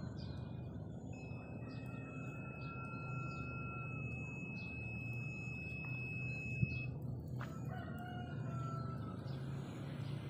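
A rooster crowing, with small birds chirping and a steady low hum underneath. A long, steady high-pitched tone holds for about six seconds through the middle, and a single click comes a little past halfway.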